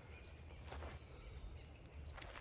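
Quiet outdoor ambience: a low, steady rumble, with a small bird's short, high chirps repeating a few times a second.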